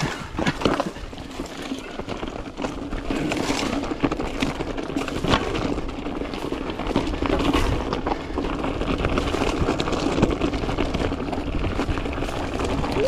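Mountain bike riding down a rocky, loose-gravel trail: tyres crunching over stones and the bike rattling, with frequent small knocks and a steady hum underneath.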